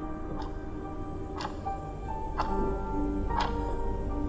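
A clock ticking steadily once a second over background music with long held tones.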